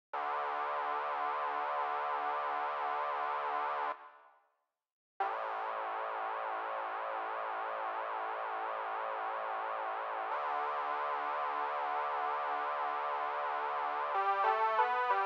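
Electronic music intro: a sustained synthesizer chord that pulses and cuts out about four seconds in, silent for about a second. It returns with a fast wavering wobble and shifts texture near ten seconds.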